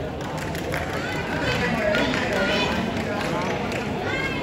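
Crowd chatter and scattered voices from spectators around a volleyball court, with light footfalls and clicks as players jog to their positions.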